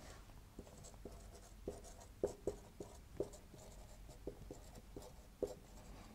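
Marker pen writing on a whiteboard: faint, short, irregular pen strokes, about ten of them.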